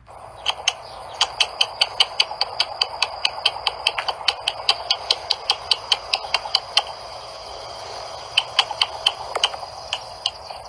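A rapid, regular series of sharp clicks, about five a second, that breaks off about seven seconds in and returns briefly near the end, over a steady background hiss.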